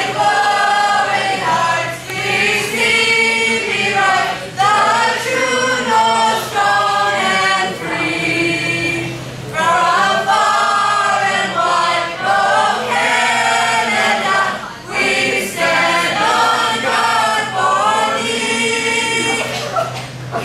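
A mixed group of young men and women singing together unaccompanied, holding and changing notes in unison throughout.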